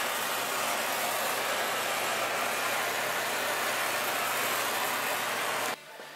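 Gas torch flame hissing steadily while it heats a stainless steel header collector to soften it for forming onto the primary tubes. The hiss cuts off abruptly near the end.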